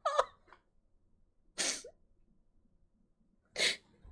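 A woman's laughter trails off, then two short, sharp breaths come about two seconds apart as she catches her breath after laughing hard.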